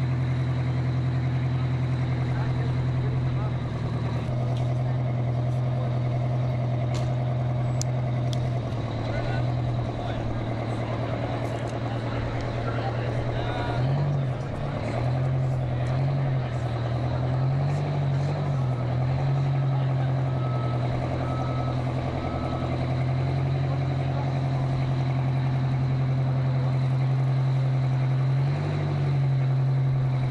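A semi-tractor race truck's big engine idling at the drag strip start line, a steady low running note whose pitch dips and rises a few times in the middle and once near the end.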